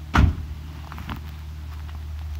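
A car door shutting: one solid thump just after the start, over a steady low hum.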